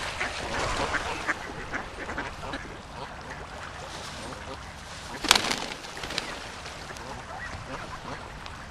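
Mallard ducks quacking, with many short calls in the first couple of seconds and more scattered after, and one loud sudden sound about five seconds in.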